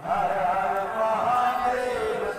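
Hindu mantra chanting: a sung recitation in long, held notes whose pitch wavers slowly.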